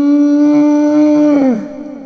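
A single long howl-like call, held at one slowly rising pitch, then dropping in pitch and fading away about one and a half seconds in.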